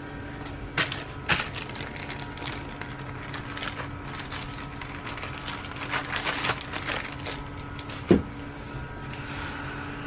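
Bottles and packaging being handled and set down: a scatter of light clicks, knocks and rustles, with a sharper thump about eight seconds in, over a steady electrical hum.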